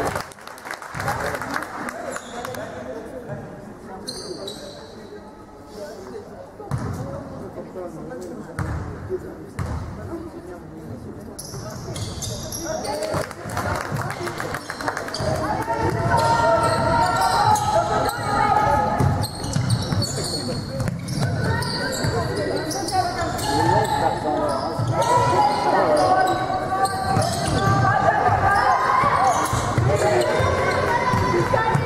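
A basketball bouncing on a hardwood court in a large, echoing sports hall, with players' and spectators' voices. The first half is quieter, with separate bounces. From about halfway the voices grow louder and more constant over the bounces.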